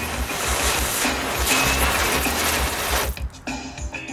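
Ground-spinner firework (Klasek Velký Roťáček, category 1) burning with a loud, steady hiss that cuts off about three seconds in as it burns out.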